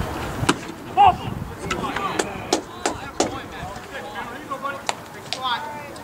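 A string of sharp claps or pops, about seven at irregular intervals over the first five seconds, with faint distant shouts between them.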